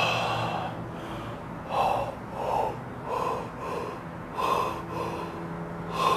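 A person taking forceful, audible gulps of air, an air-gulping breathing exercise. One loud gasp comes at the start, then a string of short, sharp breaths, loosely in pairs, each well under a second.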